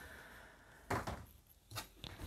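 Mostly quiet, with a faint short knock about a second in and a smaller one near the end: card or board being handled and set down on a cutting mat.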